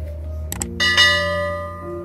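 Subscribe-button sound effect: a quick double mouse click, then a bright bell chime that rings out and fades, over background music.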